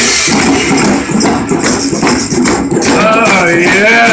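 Live Irish folk band music: djembe and a large barrel drum beaten in a fast, driving rhythm with rattling percussion, and a melody line coming in about three seconds in.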